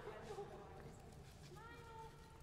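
Faint, indistinct voices in the rink, with one voice calling out near the end.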